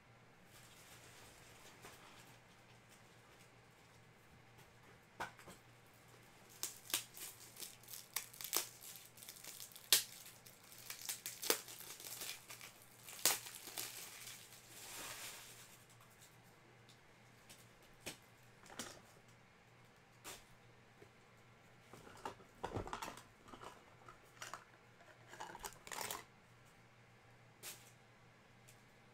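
Trading-card pack wrappers being torn open and crinkled, with clicks and rustles of cards being handled. The sounds come in two busy spells with a quieter stretch between.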